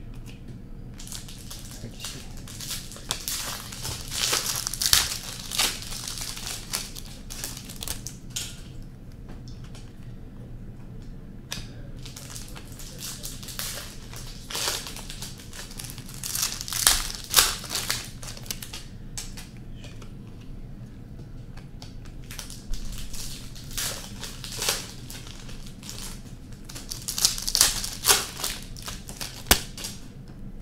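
Hockey card packs being opened and sorted by hand: wrappers crinkling and cards sliding and flicking against each other, in several bursts of rustling a few seconds long.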